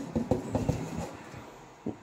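Metal rice-cooker inner pot knocking and rattling lightly against a stainless steel sink as it is handled to level the rice: a quick run of taps in the first second that fades, then one more click near the end.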